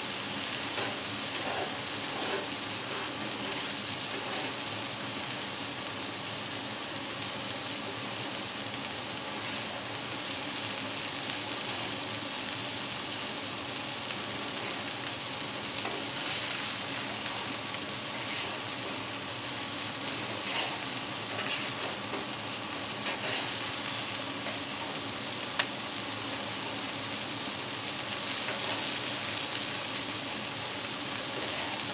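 Food sizzling steadily on a hot cast-iron griddle top over a barbecue. A single sharp click about three-quarters of the way through.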